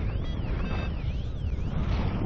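A paragliding variometer's sink alarm: a siren-like tone sweeping up and down about once every three quarters of a second, signalling that the glider is descending. Steady wind rushes on the microphone underneath.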